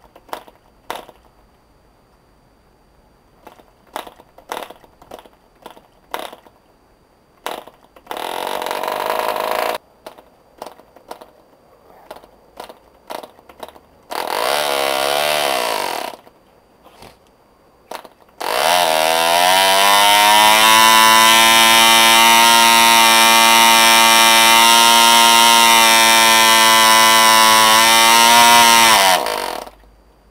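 Small model diesel engine with a newly made piston, driving a propeller: a string of clicks as the prop is hand-flicked, two short bursts of running around 8 and 14 seconds, then it starts and runs steadily at a high pitch. The pitch rises as it picks up, holds for about ten seconds, then the engine cuts out suddenly.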